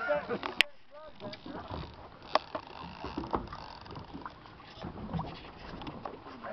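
Ambient noise on a boat at sea, with faint voices in the background and a single sharp click about half a second in.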